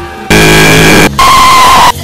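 Two very loud, harshly distorted blasts of noise, each lasting under a second with a short break between them. Both cut off abruptly, and the second carries a steady high tone.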